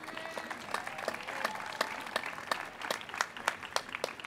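Audience applauding a graduate: scattered, irregular hand claps from a seated crowd, moderately loud and steady with no single clap standing out.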